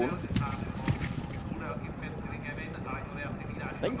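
Hoofbeats of a field of racehorses galloping on turf, an irregular run of dull strokes.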